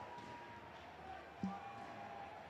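Faint crowd murmur from spectators, with one short thump about one and a half seconds in.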